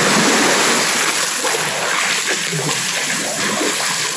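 Swimming pool water splashing just after people jump in: spray falling back onto the surface and the water churning, easing off slowly.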